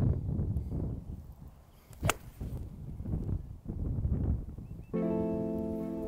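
A golf iron striking a ball once, a single sharp crack about two seconds in, over gusts of wind on the microphone. Guitar music starts near the end.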